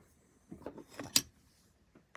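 Faint handling noises, with one sharp click a little over a second in.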